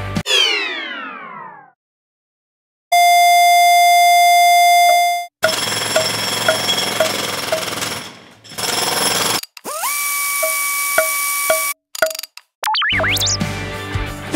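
A string of edited TV-style sound effects: a falling power-down glide, a second of silence, then a loud steady test-card tone for a couple of seconds, followed by hiss with regular ticks about twice a second, a second steady beep tone with short pips, and quick warbling glides before the background sound returns near the end.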